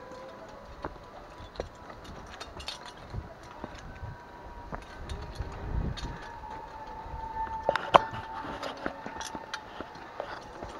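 A person walking down stone steps on a forest trail: irregular footfalls with scattered clicks and knocks, the loudest click about eight seconds in, over a faint steady tone.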